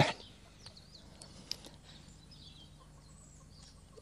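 Faint outdoor background with a distant chicken clucking and small birds calling, and one short tap about a second and a half in.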